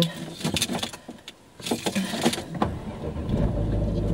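Car keys jangling and clicking in the ignition, then the car's engine starting about three seconds in and settling into a steady low idle.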